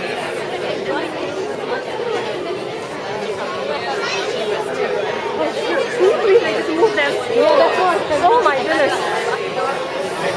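Many voices of children and adults chattering at once in a large hall, with no single voice standing out. The babble grows busier near the end.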